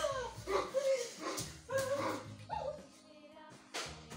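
A dog barking and yelping in a run of short calls about every half second over background music with a beat. A single sharp hit comes near the end.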